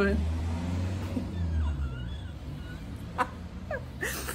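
Low rumble of a passing vehicle, fading out about two seconds in, with faint high chirps over it and a short tap a little after three seconds.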